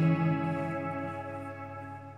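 Electric guitar chord ringing out and slowly fading, with effects and reverb, between sung lines.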